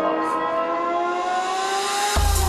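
Ambient drum and bass track at a build-up: several sustained synth tones slowly glide upward in pitch, with no drums or bass underneath.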